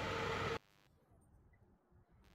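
Metal lathe running, a steady machine noise with a steady whine in it, which cuts off abruptly about half a second in; near silence for the rest.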